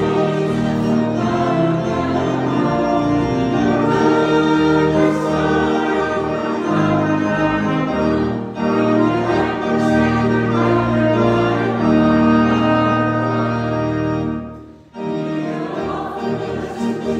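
A hymn played in sustained chords on keyboard and trumpets, with a choir singing. The music breaks off briefly about a second before the end, then starts again.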